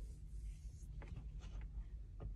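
Faint rubbing and scraping from a hand-held phone being handled against its microphone, a few soft scuffs about a second in, over a low steady hum.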